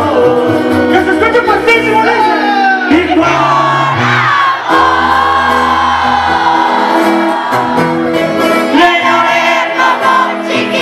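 Live sierreño-style band music: tuba bass notes under a twelve-string acoustic guitar and sung or shouted voices, with crowd noise.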